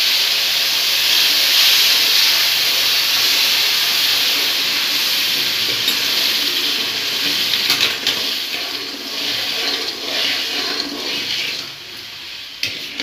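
Hot water poured into roasted semolina in a hot metal kadhai, hissing and bubbling loudly as it boils up on contact. The hiss eases gradually in the second half, with a steel ladle scraping and clinking against the pan.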